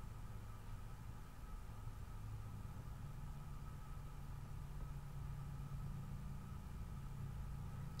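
Quiet room tone: a faint, steady low hum with no distinct events.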